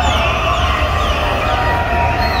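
Large crowd cheering and shouting, with many overlapping high cries that fall in pitch.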